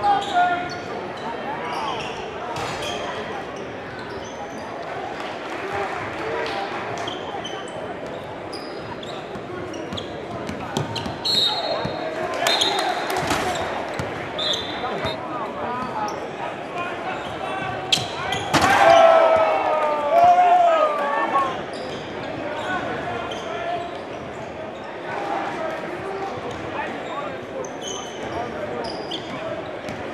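Live gym sound of a basketball game: a basketball dribbled on a hardwood court amid crowd chatter in a large, echoing hall, with louder shouting from the crowd about nineteen to twenty-one seconds in.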